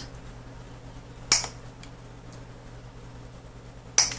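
Wire cutters snipping off the small ends of craft wire: one sharp snip about a second in and another at the very end, with a few faint ticks of metal between.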